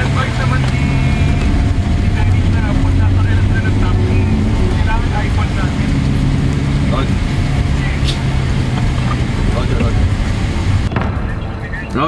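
Car engine and road noise heard from inside the cabin while driving: a steady low rumble with an even hiss, and indistinct voices underneath.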